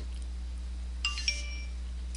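A short two-note computer chime, two quick ringing notes about a second in that fade within half a second, over a steady low electrical hum.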